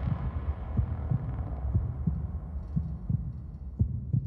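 Dramatic soundtrack underscore: a low rumbling drone with soft low thumps about twice a second.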